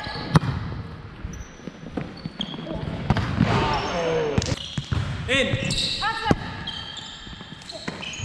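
Indoor volleyball rally on a hardwood court in a large, echoing hall: a sharp smack of hands on the ball less than half a second in, the loudest sound, and another about six seconds in, with short squeaks of sneakers on the floor and players' voices between them.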